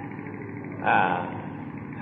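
A pause in a man's lecture on an old recording: steady background hiss and hum, with a short hesitant "uh" about a second in.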